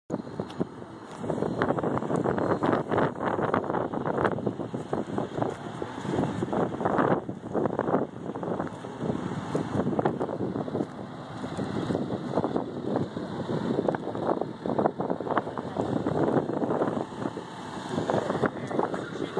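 Wind buffeting a phone's microphone in irregular gusts.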